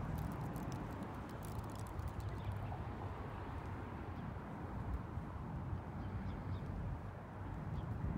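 Steady low outdoor background rumble, rising and falling a little in level, with a few faint clicks near the start.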